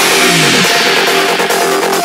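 Dubstep track at a transition: the heavy bass cuts out and a falling synth glide, much like an engine revving down, leads into a dense, bright synth passage with no bass.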